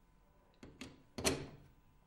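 Plastic plug-in mains adapter being pushed into a wall socket: two light clicks, then a louder knock a little past a second in as it seats.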